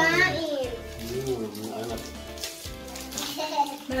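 Children's voices, a shout in the first half second and talk again near the end, over background music.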